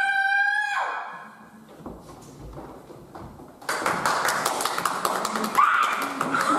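A child's high-pitched voice holds a long call for about a second. After a quieter stretch, a sudden loud hiss full of rapid clicks starts about two-thirds of the way in, with a short rising cry near the end.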